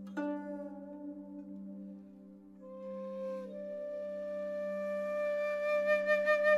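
Traditional-style background music: a plucked string note just after the start, then flute notes held over a steady low drone.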